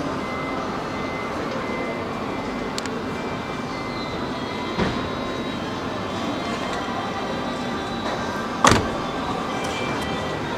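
Steady background noise of a busy exhibition hall with faint music, a short knock about five seconds in and a sharp, louder thump near the end.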